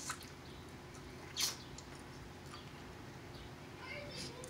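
Quiet close-up eating sounds of a man working at cooked crab with his mouth, with one short, sharp noise about one and a half seconds in, over a low steady hum.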